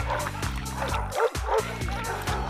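Cartoon soundtrack music under a pack of dogs yelping and barking, a string of short rising-and-falling calls several times a second.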